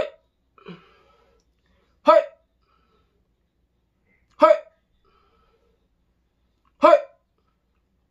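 A man hiccuping four times, each a short, sharp 'hic' with a voiced pitch, evenly spaced about two to two and a half seconds apart.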